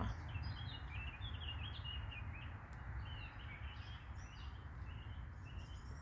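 Small songbirds chirping and twittering, a run of quick high chirps, over a steady low background rumble.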